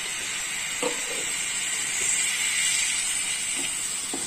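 Freshly added ground tomato paste sizzling in hot oil with onion and ginger-garlic paste in a non-stick kadai. It is a steady frying hiss that grows a little louder about halfway through.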